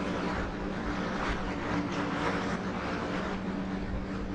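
Steady background hum with a constant low drone, over faint strokes of a marker drawing a line on a whiteboard.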